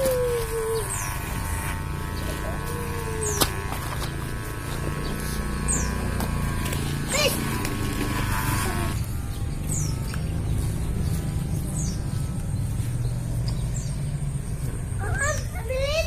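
Corded electric hair clipper buzzing steadily during a haircut, with short high bird chirps every second or two.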